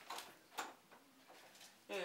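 Faint clicks of a door knob and latch in a quiet room, with faint voices; near the end a louder sound starts as the door swings open.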